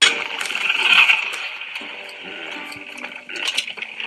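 Sound effects from an animated short film: water splashing and lapping, with a run of small clinks and knocks. It starts suddenly and is loudest in the first second.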